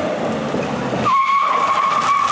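Toyota Tacoma pickup rolling up on the road, then its brakes squealing in one steady high tone for over a second as it comes to a stop.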